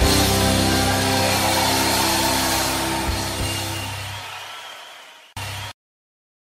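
Live country band holding a final chord that rings out and fades away over the last couple of seconds. A brief snatch of sound follows, then the track cuts to dead silence.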